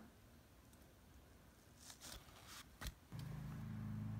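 Near silence, then a few faint clicks and rustles about two to three seconds in, followed from about three seconds in by a quiet, steady low hum.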